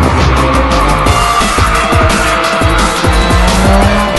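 Music playing over a Mitsubishi Lancer Evolution X rally car's turbocharged four-cylinder engine running hard, with tyres squealing.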